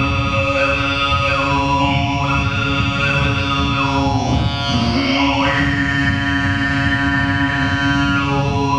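Khoomei throat singing into a microphone: a steady low drone with a whistling overtone melody stepping up and down above it. About halfway through, the drone slides down and back, and the overtone then holds on a high note. A dense low rumble runs underneath.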